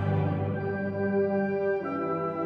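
Orchestra of strings and winds holding soft sustained chords, moving to a new chord near the end.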